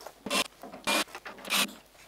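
Cordless drill-driver run in three short trigger blips, each about a fifth of a second, spaced roughly half a second apart.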